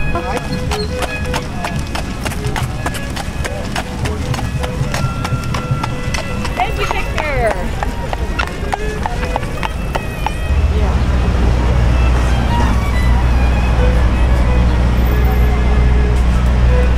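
Horse hooves clip-clopping on the asphalt street as horse-drawn carriages pass, in a quick irregular patter of strikes. About ten seconds in, a louder low rumble takes over beneath them.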